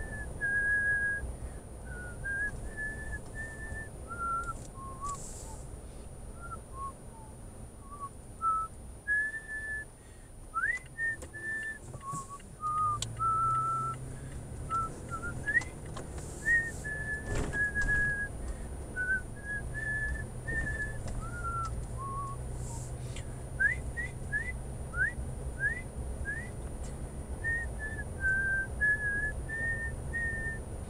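A person whistling a tune inside a moving car: short held notes stepping up and down, with a few quick upward slides near the end, over the low rumble of the car.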